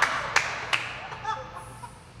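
Audience laughing, the laughter fading away, with a few sharp hand claps in the first second.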